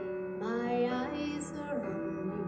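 A woman singing a Christian worship song into a microphone over instrumental accompaniment. She sings one phrase, rising into a held note in the middle, over steady backing chords.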